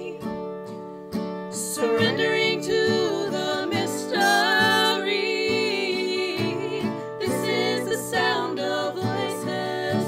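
Several women's voices singing a song together in harmony, with acoustic guitar accompanying.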